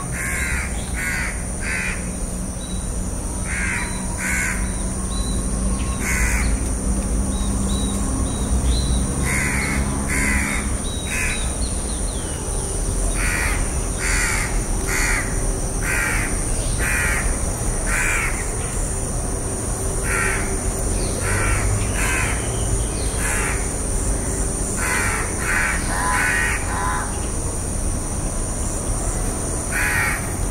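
House crow cawing in runs of two to five short, harsh caws, with pauses of a few seconds between the runs, over a steady low background rumble and a faint high hiss.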